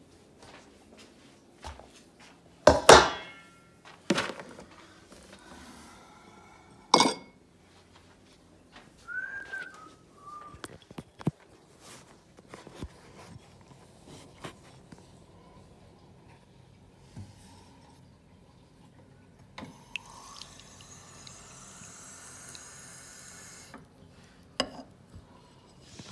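Kitchen clatter of a dog bowl and a glass being handled: several loud clunks and clinks in the first few seconds, a short squeak, then a tap running for about four seconds as water is drawn for the bowl, and a final knock as something is set down.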